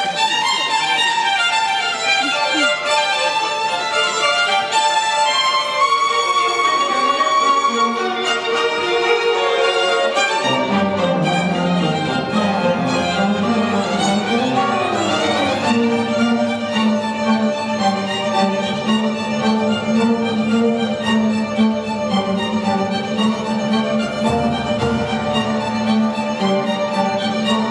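Live orchestra with bowed strings to the fore, playing the instrumental introduction of a rock song with a keyboard and band. Low notes come in about ten seconds in, and a long low note is held from about the middle on.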